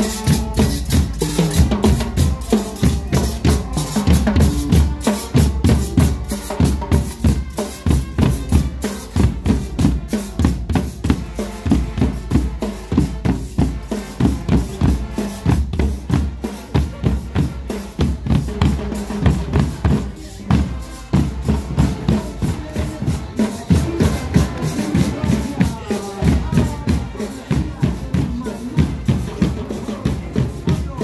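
Street marching band playing: bass drums and snare drums beat a steady rhythm under brass.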